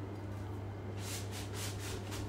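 A soft rubbing noise, repeated about five times a second from about halfway through, over a low steady hum.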